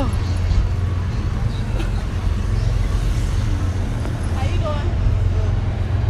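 Steady low rumble of city street traffic, with a few brief voices over it.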